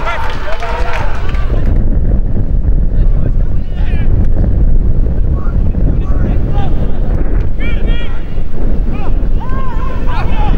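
Storm wind buffeting the microphone: a loud, continuous low rumble. Scattered distant shouts and calls come through it, a few around the middle and near the end.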